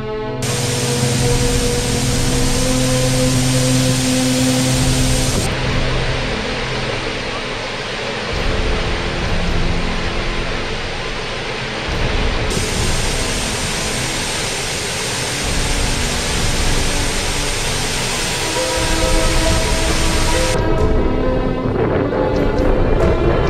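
Large waterfall pouring, a loud steady rush of falling water, with background music faintly underneath. The rush cuts off shortly before the end, leaving the music.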